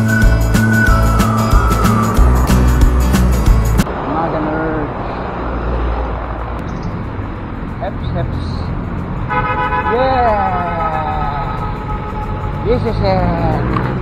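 Background music with a heavy beat for about the first four seconds, then a cut to the steady rumble of riding a bicycle in road traffic. A vehicle horn sounds for about two seconds around nine seconds in.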